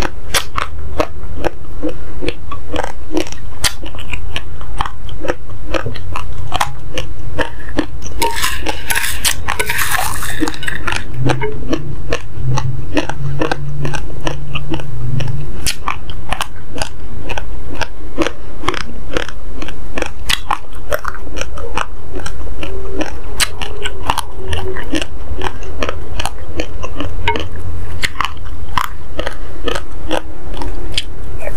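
Close-miked chewing of uncooked basmati rice: a dense, continuous run of small sharp crunches, several a second, as the hard dry grains are bitten and ground. A brief louder hissing rustle comes about nine seconds in.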